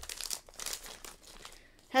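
Plastic packaging of a carded set of safety eyes crinkling as fingers handle it, faint and uneven, dying away over the last half second.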